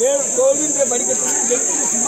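Overlapping chatter of a close crowd of adults and children, over a steady high-pitched buzz that does not change.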